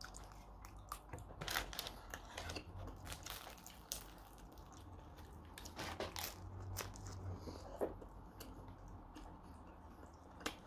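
Faint close-up chewing and biting of food, with scattered small crunches and clicks as a crusty bread roll is bitten, over a low steady hum.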